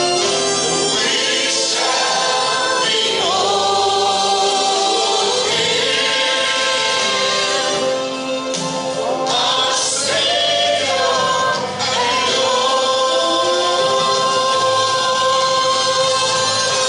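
A congregation singing a gospel hymn together, with long held notes.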